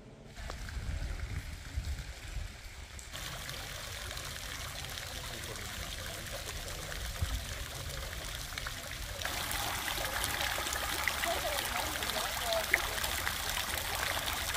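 Stone courtyard fountain splashing and trickling into its basin, a steady rush of water that grows louder and brighter about nine seconds in. It opens with a low rumble for the first few seconds.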